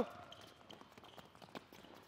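Faint, quick, irregular footfalls: sneakers tapping on an indoor court surface as players step rapidly through an agility ladder.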